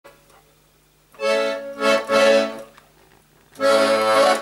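Garmon, a small Russian button accordion, playing chords: quiet for the first second, then two short phrases, a brief pause, and the playing starts again near the end.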